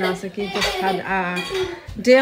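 A woman talking, with a brief clink about half a second in.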